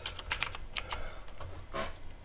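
Computer keyboard being typed: a quick run of separate keystrokes, about eight in two seconds, with a somewhat louder, longer sound near the end.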